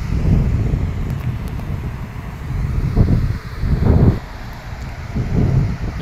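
Wind buffeting the microphone in gusts: an uneven low rumble that swells strongest about three and four seconds in.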